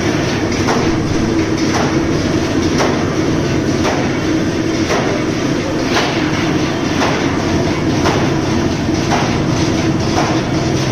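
Automatic paper reel-to-sheet cutting machine running: a steady mechanical hum with a sharp cutter stroke repeating about once a second.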